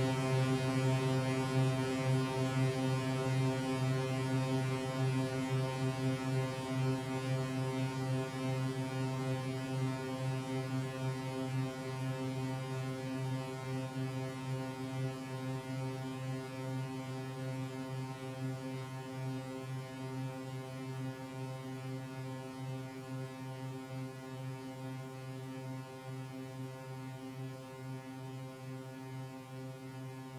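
Ensoniq VFX synthesizer: one low note struck just before, ringing on as a steady, even-pitched tone through the Concert Reverb effect set to its longest decay time (99), fading slowly and evenly over about thirty seconds: a very long reverb tail.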